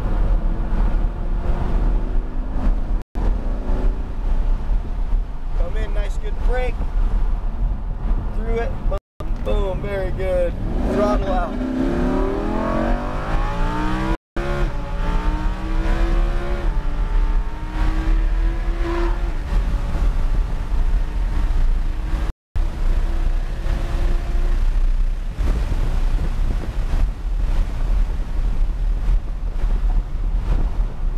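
Lamborghini Huracán LP610-4's 5.2-litre V10 heard from inside the cabin as the car accelerates on track, its pitch rising in sweeps through the middle, over steady road and wind rumble. The audio cuts out briefly four times.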